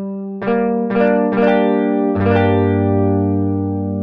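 Guitar notes from the app's audio engine, picked one after another as notes of a Gm7 voicing are tapped on the virtual fretboard. About five notes come in over the first two and a half seconds, the lowest entering last, and then they ring on together as a chord and slowly fade.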